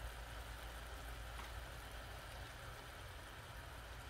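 Jaggery syrup boiling in a pan: a faint, steady bubbling hiss over a low hum.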